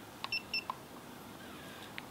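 RedBack PL650 pipe laser's keypad giving two short electronic beeps in quick succession, with faint button clicks just before and after. The beeps confirm the Enter press that sets the laser to a 1.670% grade.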